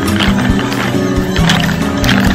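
Music with sustained notes plays while wooden clogs clack on pavement in a dance step, a series of sharp clip-clop knocks.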